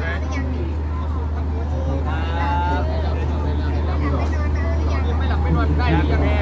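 Large mobile generator set running with a steady low drone, with people's voices talking over it.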